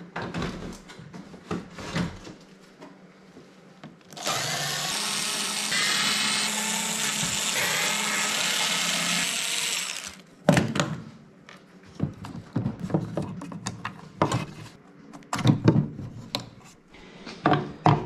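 A small cordless screwdriver whirs for about six seconds, backing screws out of a plastic headlight housing. Before and after it, clicks and knocks as the housing and loose screws are handled on the bench.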